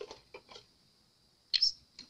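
Light clicks and taps of small alcohol ink bottles being handled and put away, with a quiet gap in the middle and a sharper click about one and a half seconds in.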